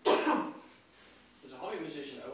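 A person coughing once, a short loud burst about half a second long, followed by a man starting to speak.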